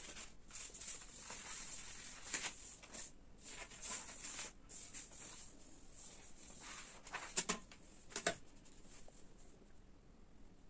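Faint rustling of sheets of craft paper being handled and slid across a table, with a few sharp taps, the loudest two about a second apart in the second half, as a pencil and plastic ruler are picked up and laid on the paper.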